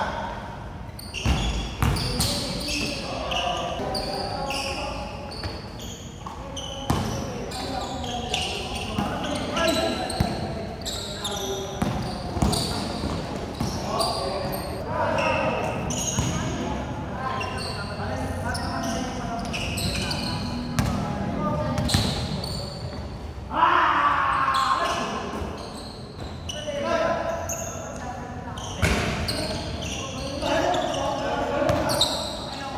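A basketball bouncing on a hard court in irregular sharp thuds as it is dribbled and shot during play, with players calling out to one another over it.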